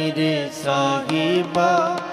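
Sikh shabad kirtan: a male voice sings a long, ornamented, wordless-sounding line over sustained harmonium, with a few tabla strokes.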